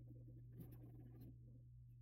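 Near silence: room tone with a steady low hum and a couple of faint ticks about half a second and a second in.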